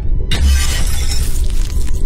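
Glass-shattering sound effect: a sudden crash about a third of a second in, with a low rumble under it and a long tail of breaking glass, over music.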